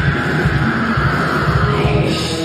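Rock band playing a loud, sustained passage on electric guitar and bass.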